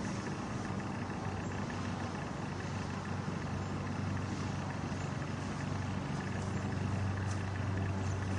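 Steady road traffic noise with a constant low hum, growing a little louder toward the end.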